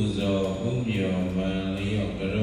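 A Buddhist monk's voice chanting a recitation, moving in held, level pitch steps in a sing-song cadence that blends into his sermon.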